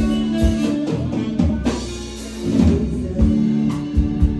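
Live band playing an instrumental stretch of a song, with a drum kit and guitar and no singing.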